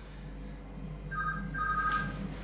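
Electronic beeping: two steady high tones sounding together, starting about a second in and breaking briefly before resuming, over faint room noise with a low hum.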